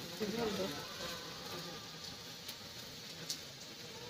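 Mutton cooking in a kadai over a wood fire, giving a faint steady sizzle with a couple of light clicks. A voice is heard briefly near the start.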